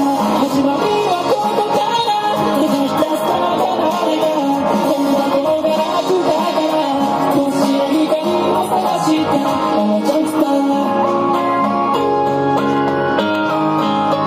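Electric guitar played through a small amplifier in a live rock song, strummed and picked; from about eleven seconds in it holds long sustained notes.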